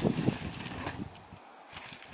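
A mountain bike passes close by on a dry dirt trail, its tyres rolling and crunching over loose dirt. The sound is loudest in the first half second and fades as the bike rides away.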